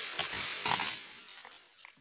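A cut oil palm frond crashing down onto dry fallen fronds: a rustling crash with a few knocks in the first second, then fading away.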